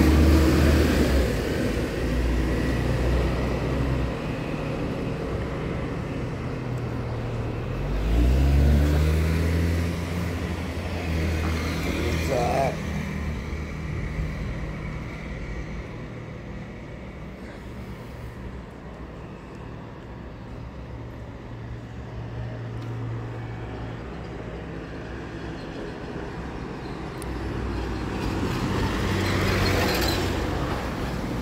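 Road traffic: motor vehicle engines running nearby, with one engine rising in pitch as it accelerates about eight seconds in.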